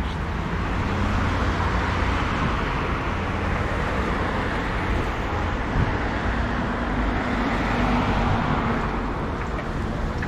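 Steady road traffic noise from cars and minibuses passing on a busy road, with a low rumble throughout and a faint steady hum joining about halfway through.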